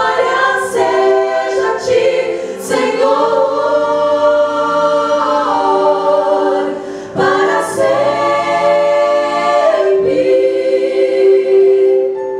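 Women's vocal group singing a Christian worship song in harmony into microphones, with long held notes and short breaths between phrases.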